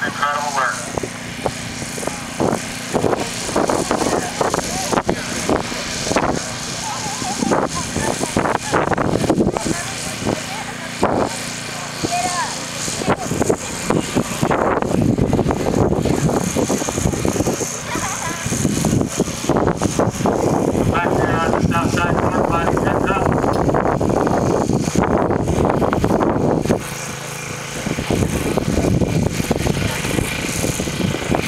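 People talking on and off, over a steady low engine-like hum.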